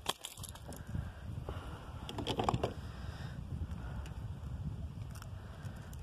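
Scattered small clicks and knocks from a fish and a metal lip-grip being handled aboard a plastic kayak, over a low steady rumble.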